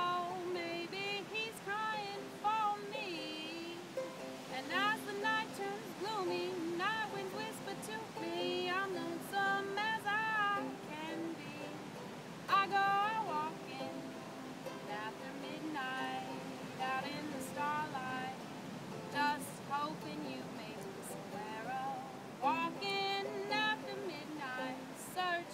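A woman singing while playing a ukulele.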